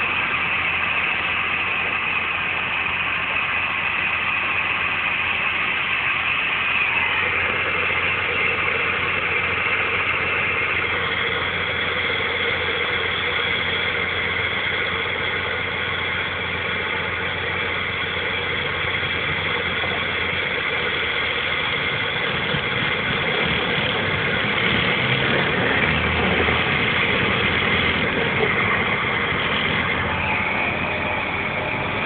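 Heavy diesel engine running steadily under heavy load, heard from inside a truck cab while a loaded 65-tonne truck is winched up a muddy track. Its pitch steps up twice in the first third, and a deeper rumble builds near the end.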